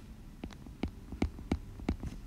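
Stylus tip tapping and clicking on an iPad's glass screen while handwriting the digits "144": about five short, sharp taps.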